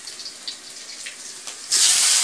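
Quiet handling, then about one and a half seconds in a sudden loud, steady sizzle as squeezed, still-wet chopped onions drop into hot oil in a kadhai.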